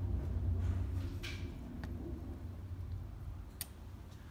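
Low steady hum with a few faint clicks and rustles of a plastic LED driver box being handled and set down.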